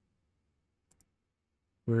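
Near silence with two faint, quick mouse clicks about a second in; a man's voice starts speaking near the end.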